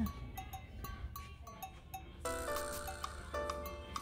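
Light background music: short plucked notes over a ticking beat.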